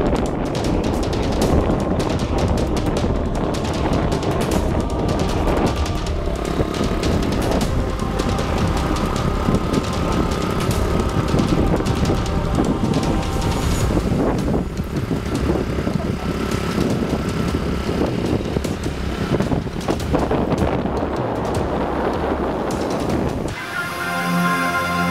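Rumbling road and wind noise from a moving vehicle, with wind buffeting the microphone in uneven gusts. Faint music runs underneath.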